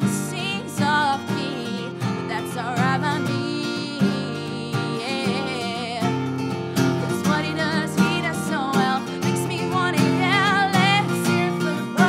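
A woman singing pop vocals with wavering held notes over a strummed, capoed acoustic guitar.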